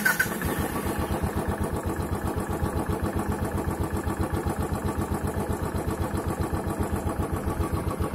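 Royal Enfield Classic 500's air-cooled single-cylinder engine idling just after a cold start, a steady even run of rapid thumps as it warms up.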